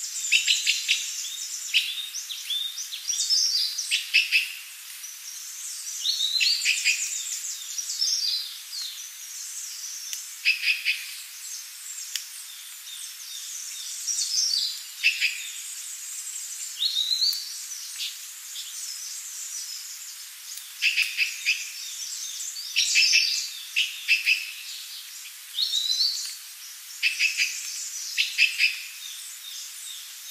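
Several forest songbirds chirping and singing, with short calls, trills and rising whistled notes every second or two. Some calls overlap, over a faint steady hiss.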